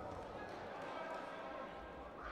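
Indistinct voices echoing in a large sports hall, with no clear words.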